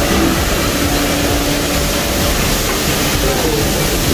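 Loud, steady noise of commercial kitchen extractor hood fans running, with faint voices underneath.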